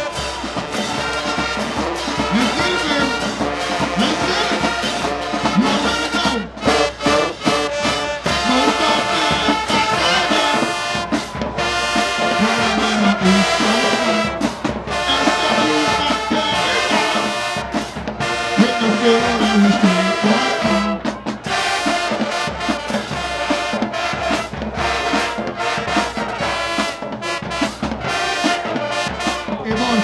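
High school marching band playing a brass-heavy tune: sousaphones, trumpets and trombones over a drumline, with sliding low brass notes and steady drum hits.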